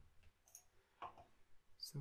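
A few faint, short clicks over near silence, typical of a computer mouse being clicked at a desk.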